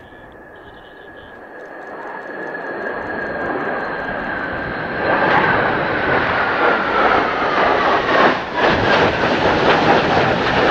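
Three F-4EJ Kai Phantom II fighters passing overhead in formation, the jet noise of their J79 turbojets swelling over the first five seconds. It becomes loud from about halfway, with a whine that slides down in pitch as they go by.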